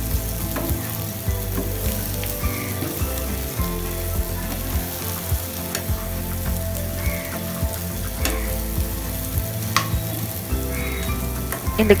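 Yam cubes with onion and spices sizzling steadily in oil in a nonstick frying pan while being stirred, with a few scattered scrapes and taps of the utensil against the pan.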